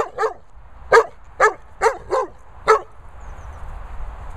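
A dog barking in play: about seven sharp barks in under three seconds, then the barking stops.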